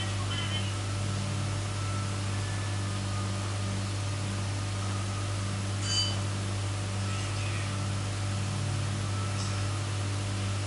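Steady low electrical hum under a constant hiss, with faint dialogue now and then from the dubbed drama playing over the room's speakers. A single short click about six seconds in.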